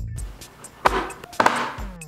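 The background music breaks off for two short, loud, noisy hits about a second apart, followed near the end by a falling sliding tone, before the beat comes back in.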